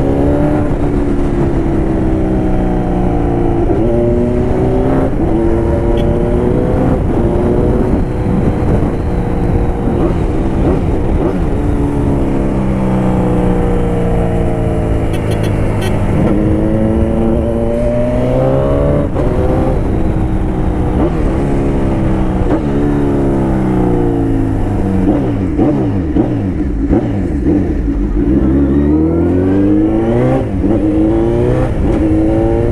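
Suzuki Hayabusa's inline-four engine, breathing through an Atalla stainless-steel aftermarket exhaust tip, pulls up through the gears several times. The pitch climbs and drops at each shift. Near the end the revs fall in steps as the bike slows, then pick up again, with wind noise underneath.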